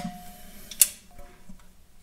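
A single sharp metallic click about a second in, then a few faint ticks: a steel wrench being set onto the idler shaft's set bolt and jam nut.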